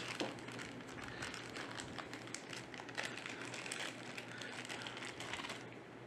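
Clear plastic zip bag crinkling as hands open it and pull out a plastic connector, with many small crackles throughout.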